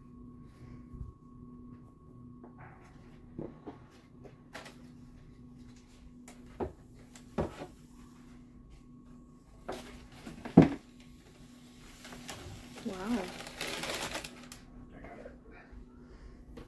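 Handling noises in a plastic reptile-rack tub: scattered clicks and knocks from a metal snake hook and the tub drawer, with one sharp knock about ten and a half seconds in, then a longer stretch of rustling paper near the end.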